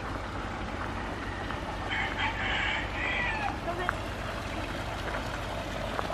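Steady outdoor background noise, with a short call from a farmyard fowl about two seconds in.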